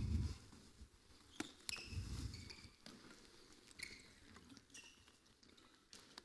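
Faint indoor handball court sounds: sports shoes squeaking and patting on the court floor, with a few sharp knocks from the ball being passed and caught.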